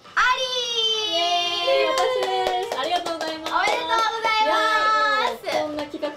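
Several young women's voices singing a long, drawn-out, sliding tune together, with hand claps scattered through it.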